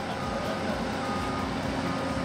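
Excavator engine running steadily, with a held whining tone over a low rumble.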